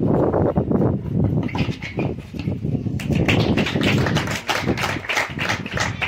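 Wind buffeting the camera microphone in a steady low rumble. From about three seconds in, a dense patter of hand claps and voices joins it: spectators applauding at the end of a tennis point.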